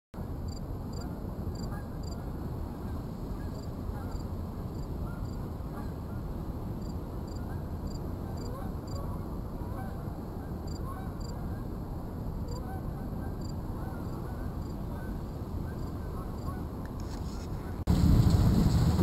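A flock of geese honking as they fly over: many short scattered calls over a steady low rumble, with a faint regular high chirping behind.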